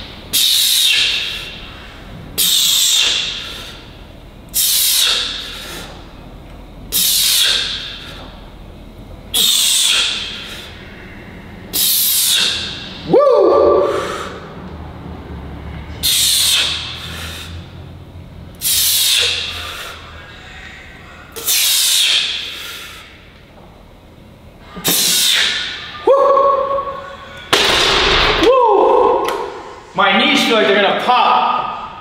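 A weightlifter's sharp forced exhales, one with each rep of a set of barbell back squats, about a dozen coming every two seconds or so. A few of the later reps carry a voiced grunt of strain as the set gets hard.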